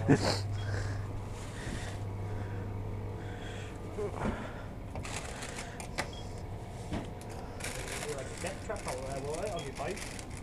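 Shop room tone: a steady low hum with faint voices in the background. From about five seconds in there is rustling with scattered clicks as goods are handled at the checkout counter.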